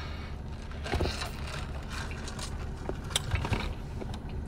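Steady hum and hiss of a car's air conditioning running inside the cabin, with a few soft noises from sipping an iced drink through a straw about a second in and again near the end.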